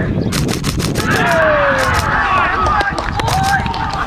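Several men shouting at once on a football pitch, their calls overlapping. There is a run of sharp clicks in the first second.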